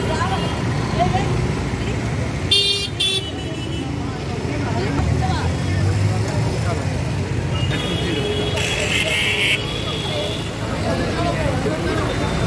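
City street traffic: a steady low rumble of engines, with a vehicle horn tooting briefly about two and a half seconds in and another high horn-like burst near nine seconds.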